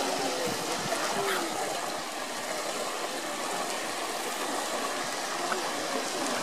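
Steady rush of water in a zoo polar bear pool as the bear swims, with faint voices of onlookers in the background during the first second or so.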